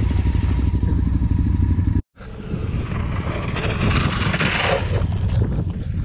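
Adventure motorcycle engine running steadily while riding along a dirt track, with wind rushing over the microphone. The sound cuts out for an instant about two seconds in. It picks up again, and a rushing hiss swells and fades near the middle.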